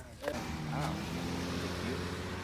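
Steady hum and hiss of a motor vehicle running, starting about a quarter second in.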